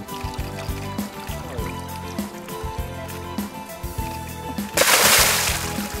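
Background music plays throughout. Near the end comes one loud splash of water lasting about a second, the angler kneeling in the lake with the carp suddenly drenched.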